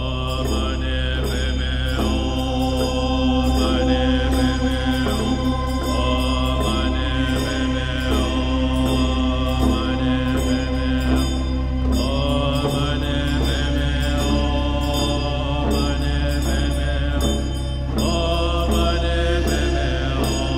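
Music with a chanted mantra over a steady low drone. The chanted phrases rise and fall about every two seconds, with a light regular ticking on top.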